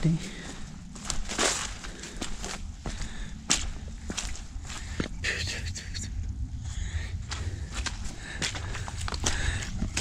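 A hiker's footsteps on a wet, muddy trail, an irregular run of soft sharp steps and splats, over a steady low rumble.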